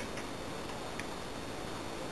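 Faint small ticks of a lock pick working the pins inside a TESA T60 pin-tumbler cylinder, one a little clearer about a second in, over a steady hiss.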